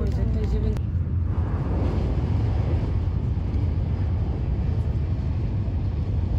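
Steady low rumble of a Shinkansen bullet train running at speed, heard from inside the passenger cabin.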